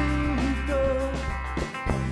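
A live rock band playing, with electric guitars, keyboards, bass and drums holding sustained chords. The bass drops out briefly near the end.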